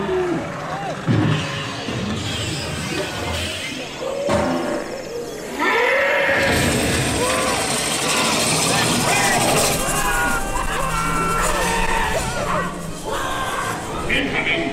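Dark-ride soundtrack with character voices and music. About five and a half seconds in, a loud, continuous noisy rumble joins it as Frank the combine harvester looms up at the ride vehicle.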